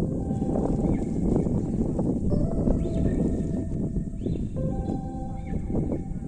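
Wind rumbling on the microphone on an exposed mountain ridge, an uneven, gusty noise, with a few faint held tones above it.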